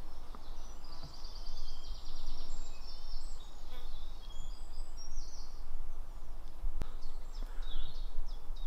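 Several woodland songbirds singing: short high chirps and rapid trills, most in the first half, over a steady low background of outdoor noise. A single sharp click near the end.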